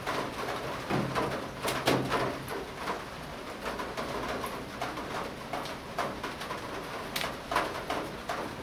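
A bird calling with a low call about a second in that lasts over a second, among light clicks and taps of small watch parts being handled on the table.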